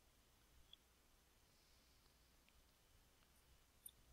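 Near silence: faint room tone with two small clicks, one under a second in and one near the end.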